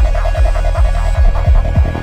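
Forest psychedelic trance: a fast four-on-the-floor kick drum, about two and a half beats a second, over a rolling bassline and a rapid pulsing synth pattern; the kicks come closer together near the end.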